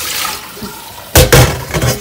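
Water running from a kitchen tap into a stainless steel sink as something is rinsed. Just over a second in come several loud knocks and clatters, the loudest sounds.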